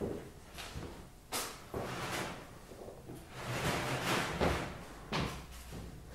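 Wooden knocks and clatters as the old piano's case and parts are handled: sudden bangs at the start and near the end, with a longer stretch of rattling and scraping in the middle.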